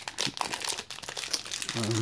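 Plastic candy wrapper crinkling in a string of sharp crackles as it is handled and pulled open, with a short hummed "mm" near the end.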